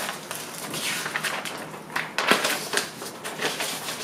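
Paper and cardboard rustling and crinkling as a mailed package and its handwritten note are handled and unfolded, in short irregular rustles with a few sharp clicks, one of them a little past halfway.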